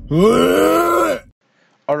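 A man's drawn-out groan of nausea and disgust, about a second long, its pitch rising then falling, with a strained, breathy edge; it cuts off abruptly.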